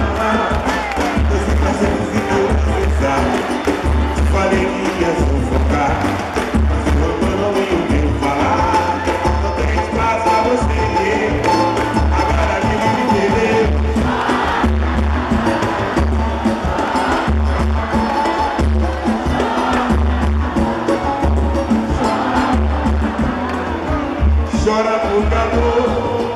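Live pagode (samba) band playing, with a steady low drum beat under the instruments and voices, and crowd noise from the audience.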